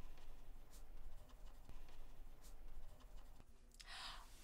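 Faint scratching of a pen writing on paper in a notebook, with a few light ticks, and a short breath near the end.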